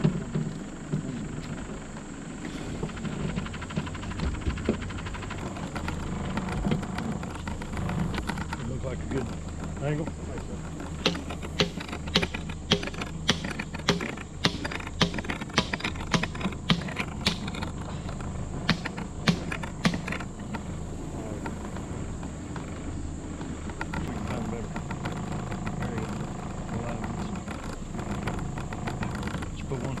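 Mallet with a yellow plastic-and-rubber head driving a pipe bank pole into the mud, with about seventeen sharp blows at roughly two a second and a short pause near the end of the run.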